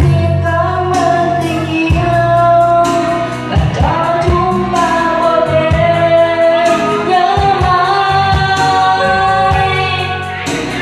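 A young woman singing a slow melody into a handheld microphone, her long held notes wavering, over instrumental backing with a steady beat.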